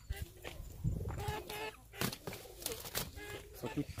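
Chickens clucking faintly, with a few sharp knocks in between.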